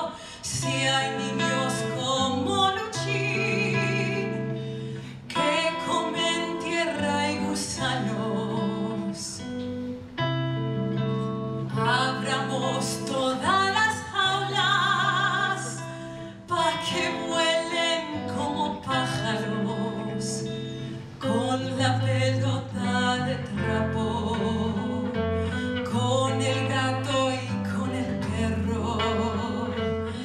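A woman singing live into a microphone with instrumental accompaniment, her long held notes wavering with vibrato.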